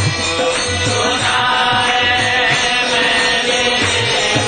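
Devotional chanting with music: voices sing over repeated low drum strokes and a steady held droning tone.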